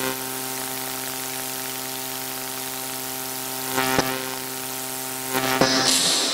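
Steady electrical hum from a microphone and PA system, with a sharp knock about four seconds in and a burst of hiss near the end.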